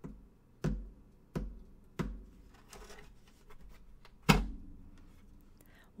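A series of dull thuds with a low thump to each: four evenly spaced about two-thirds of a second apart, then a louder one about four seconds in.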